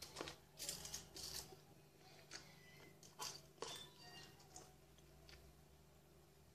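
Crunchy bites and chewing of cereal with granola clusters: a quick run of sharp crunches in the first second and a half, a few more around three to four seconds in, then softer chewing.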